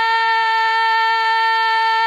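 A solo voice holding one long, steady sung note, part of an ornamented song.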